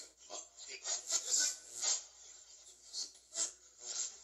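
Ghost box app played through a small amplifier speaker, giving choppy, irregular bursts of hissing static and clipped sound fragments, about two a second.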